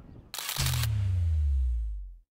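Outro logo sound effect: a short, sharp burst of noise, then a deep bass tone that slides down in pitch and holds.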